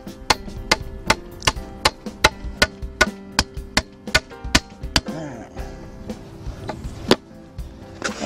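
Claw hammer driving a scrap-lumber wooden stake into the ground: a steady run of blows, about two and a half a second, for the first five seconds, then a few slower blows. Background music plays underneath.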